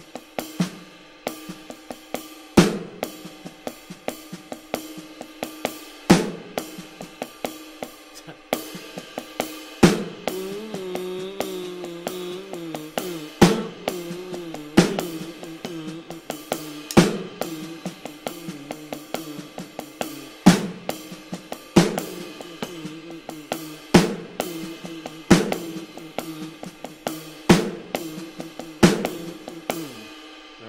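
Electronic drum kit playing a funk groove at a very slow tempo, with light hi-hat strokes broken up between the right and left hands. A loud accent hit lands every few seconds, spaced more closely in the second half.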